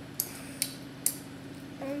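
Three short, sharp mouth clicks from a child chewing a sour gummy sweet, less than half a second apart, over a steady low hum.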